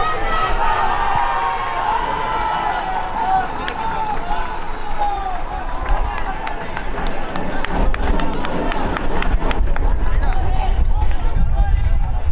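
Shouting voices of players and sideline onlookers carrying across an outdoor soccer field, with drawn-out high calls in the first few seconds. From about halfway through, scattered knocks and a low rumble grow louder.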